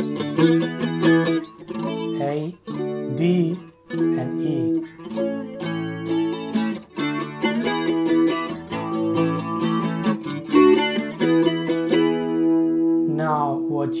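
Semi-hollow electric guitar picking chord shapes as a quick, steady run of single notes, with one note ringing on underneath through the changes.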